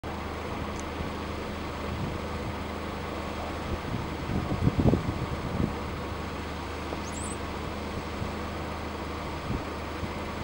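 Brown-headed cowbirds giving thin, high whistles: a brief one near the start and a rising, wavering squeak about seven seconds in, over a steady low background rumble. A few louder low thumps come in the middle.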